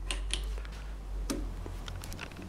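A few light metallic clicks from the Progress drill press's feed mechanism as it is handled, over a low steady rumble.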